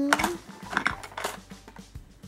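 Light clicks and clatter of wooden pencils knocking together and against a plastic box as a child picks them out, a few separate clicks. It opens on the tail of the child's drawn-out sing-song count, which stops just after the start.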